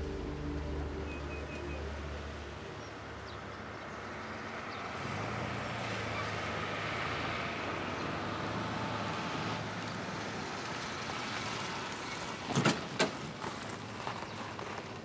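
A car approaches on a gravel village road and comes to a stop, its engine and tyre noise swelling and then easing. Near the end, two sharp clicks as a car door is unlatched and opened.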